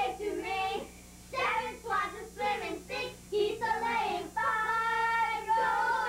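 A group of children and women singing a Christmas song together, with a long held note a little past the middle.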